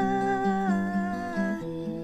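Yamaha acoustic guitar strummed under a woman's held, wordless sung note. The note steps down in pitch once and stops near the end, leaving the guitar playing on its own.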